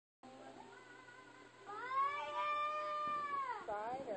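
A long, drawn-out, meow-like cry that starts about halfway in, holds one pitch for about two seconds, then wavers down and back up near the end.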